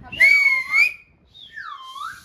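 Small plastic toy slide whistle blown twice: a loud wavering note that bends slightly upward, then a quieter note near the end that swoops down and back up.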